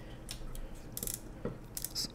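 Film advance knob of a Mamiya Six Automat folding camera being turned by hand, giving a few small, irregular ratcheting clicks.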